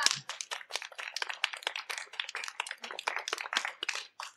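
Applause from a small group of people, with a brief voice right at the start.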